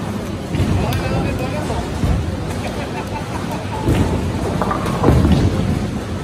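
Bowling alley din: bowling balls rumbling down the lanes and pins crashing several times, over people's voices.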